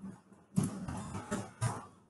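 A person coughing: three short coughs over about a second and a half, the first the loudest.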